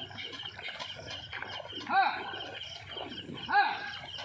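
A bullock-cart driver gives two short rising-and-falling calls, about a second and a half apart, to urge his bulls on through the water. Under them runs a steady high-pitched pulsing.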